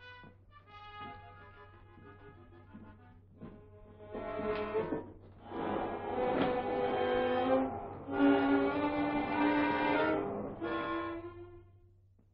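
Orchestral film score led by bowed strings: quiet held notes at first, swelling into a louder passage about halfway through, then a final held note that fades away near the end.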